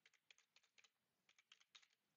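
Faint keystrokes on a computer keyboard: a quick run of key taps in two bursts with a short pause about a second in, as a password is typed at a terminal login prompt.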